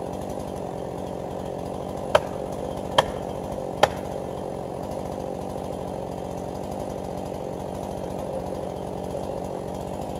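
Two-stroke chainsaw idling steadily, with three sharp knocks about two, three and nearly four seconds in.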